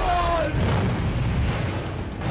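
Deep boom and rumble of an explosion, with a short falling cry or tone at the start.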